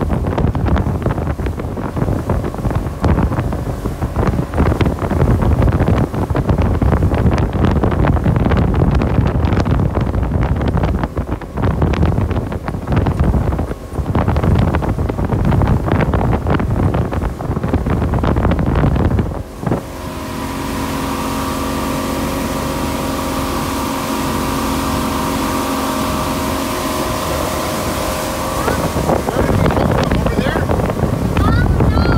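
Motorboat running under way, with heavy wind buffeting on the microphone. About two-thirds of the way through, the buffeting drops away and the boat's engine comes through as a steady drone, with an even hiss over it.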